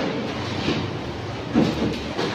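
Steady din of a busy indoor fish market hall, with a brief voice calling out about one and a half seconds in.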